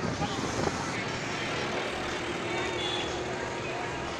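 Street traffic noise of motorbikes and scooters passing, with people's voices in the crowd.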